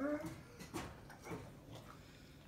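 A dog whimpering faintly, a couple of short whines.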